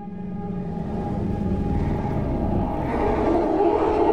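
A deep, noisy rumble that grows steadily louder, over held low musical tones: swelling cinematic trailer sound design.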